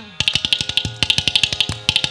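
Mridangam and ghatam playing together in a Carnatic percussion passage. After a brief lull, a fast, even run of crisp strokes begins, over the ringing pitch of the mridangam's tuned head.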